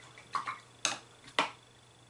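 Watercolour brush being rinsed in a water pot: a soft knock, then two sharp taps of the brush against the pot about half a second apart.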